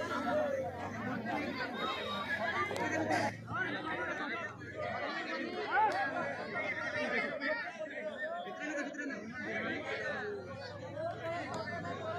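Crowd of spectators chattering, many voices talking over one another in an indistinct babble.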